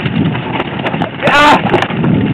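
Mountain bike rattling and knocking over rough, rocky singletrack, with low wind rumble on the camera microphone. A brief vocal cry breaks in about halfway through.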